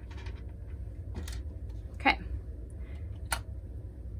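Small clicks and taps of hands handling yarn and craft tools on a tabletop, with three short sharp ones, over a steady low hum.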